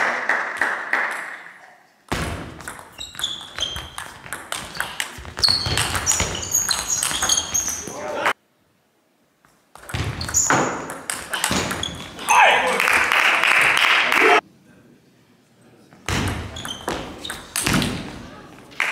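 Table tennis rallies: quick runs of sharp clicks as the ball strikes the bats and the table, echoing in a sports hall, with spectators' voices and a burst of cheering between points. The sound cuts out abruptly twice.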